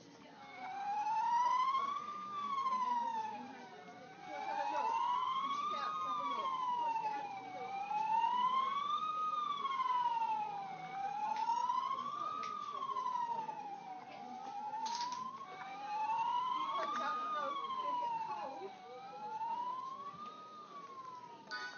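Electronic siren sound effect from a toddler's fireman sound book, played through its small built-in speaker: a wailing tone rising and falling about every three seconds. The wail breaks off and starts again twice as the button is pressed again.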